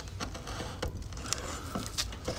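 Cylinder barrel of a seized Lambretta LI150 engine being worked off its studs by hand: a few light metal clicks and a short scrape as it lifts off a rusted, debris-choked piston.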